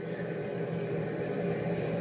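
A pause in the speech filled by a steady, low background hum with no clear event in it.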